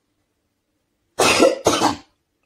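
A woman coughing twice in quick succession, starting a little over a second in.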